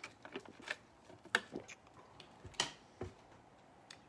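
Faint, scattered clicks and taps from handling a trading-card box and its packaging, with two sharper taps about one and a half seconds in and near the middle.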